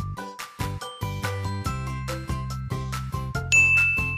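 Light, tinkling background music for children: short chime-like notes, joined by a steady bass line after about a second and a half. Near the end a single clear, high ding rings out and holds.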